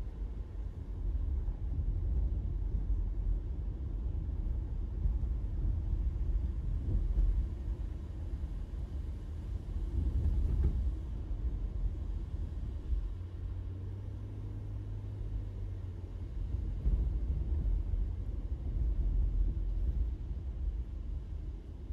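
Low road and engine rumble heard inside a car's cabin while driving, with a steady low engine hum for a few seconds past the middle.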